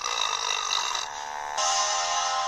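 A cartoon burp sound effect played from a television, long and rough, turning into a buzzing, pitched stretch about a second in. Music takes over at a cut about a second and a half in.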